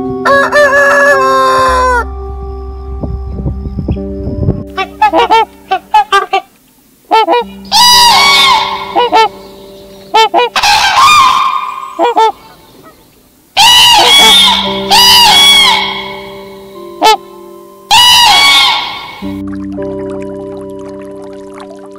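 A rooster crowing and chickens clucking, then, after a short pause, loud repeated honking calls of waterfowl in several bursts, over faint background music.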